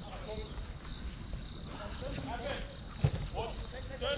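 Faint distant shouts and chatter of players on an outdoor pitch, over crickets chirping steadily. A single sharp thump about three seconds in.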